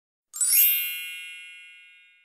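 A single bright chime struck about a third of a second in, ringing and fading slowly over about two seconds.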